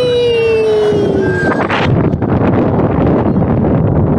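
A rider's long 'whooo' cry sliding slowly down in pitch for about a second and a half, then wind buffeting the microphone as the flying-scooter car swings round.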